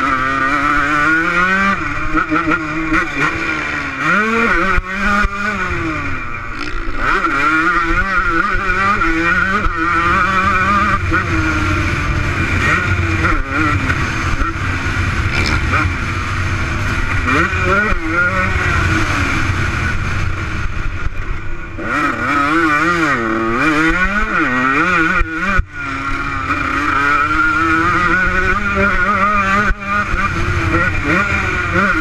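Motocross bike engine revving up and down again and again as the rider works the throttle and gears around the track. It is heard from a helmet camera, with wind rushing over the microphone.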